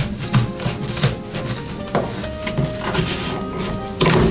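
Scissors cutting through corrugated cardboard: a quick, uneven run of snips and crunches, with background music underneath.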